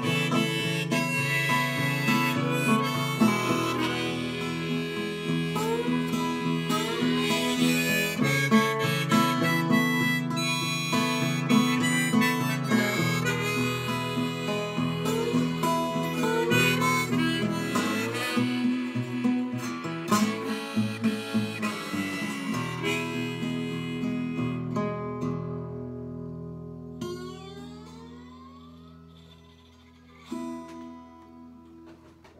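Harmonica in a neck rack played over a strummed acoustic guitar, an instrumental passage with bending harmonica notes. Over the last several seconds the playing dies away as the final chord rings out.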